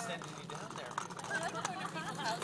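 Small hard wheels of a kick scooter rolling over a brick-paver driveway, giving a run of light clicks and rattles, with faint voices talking in the background.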